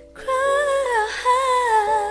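Music: a female voice sings a wordless melody with vibrato over sustained keyboard chords, coming in just after the start following a soft held chord.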